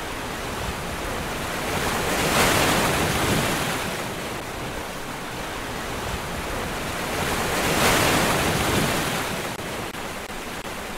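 A steady rush of noise like surf, swelling slowly twice, about two and a half seconds in and again near eight seconds.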